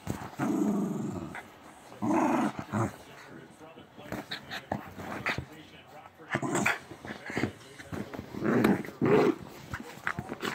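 Small dog growling during play while tugging and mouthing a plush toy, in about four bursts, the longest about a second, with soft clicks and knocks between them.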